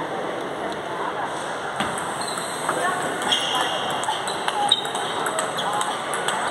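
Table tennis ball being struck back and forth in a rally: a string of short sharp clicks of ball on bat and table, starting about two seconds in, over a steady murmur of voices in a large hall.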